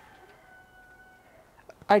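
A faint, steady pitched note held for about a second and a half, tailing off slightly at the end. A woman's voice starts just before the end.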